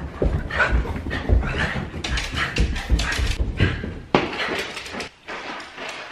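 A small dog's sounds close to the microphone as footsteps thud down carpeted stairs, about two steps a second.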